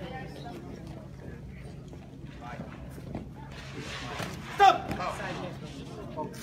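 Low murmur of voices in a large hall, then a loud shouted exclamation about four and a half seconds in, trailing into a few more raised voices.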